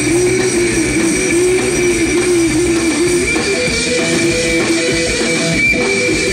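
Live rock band playing at full volume: electric guitar through an amplifier with drums. A wavering, repeating lead melody moves up to higher held notes a little past halfway.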